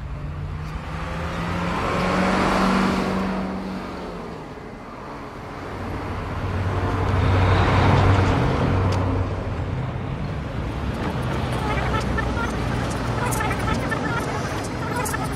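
Road traffic on a highway, with two vehicles passing close by one after the other, each swelling up and fading away, followed by steadier traffic noise.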